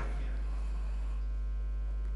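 Steady low electrical mains hum with a ladder of faint even overtones, holding at one level throughout.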